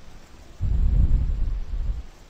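A low, dull rumble that starts just over half a second in and lasts about a second and a half.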